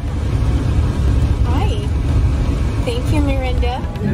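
Steady low rumble of road noise inside a moving car's cabin, with a woman's voice heard briefly twice.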